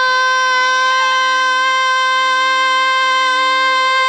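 A woman singing a bhajan, holding one long high note with a brief waver about a second in, over a steady lower drone.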